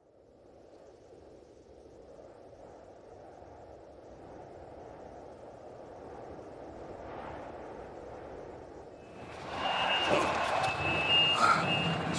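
A low rushing noise swells slowly for about nine seconds. Then a golf cart's reverse warning beeper sounds a steady high beep for about two and a half seconds over the noise of the cart moving.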